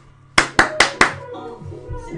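Four sharp hand claps in quick succession, about five a second, followed by faint voices.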